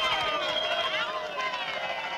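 A crowd cheering, many voices overlapping with high held cries, easing slightly about a second in.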